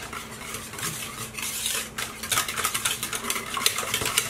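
A whisk stirring a thick creamy mixture in a mixing bowl, with rapid irregular clicks and scrapes as it strikes and drags against the bowl.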